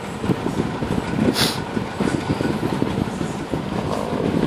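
Steady rumble of a running vehicle, with a short hiss about a second and a half in.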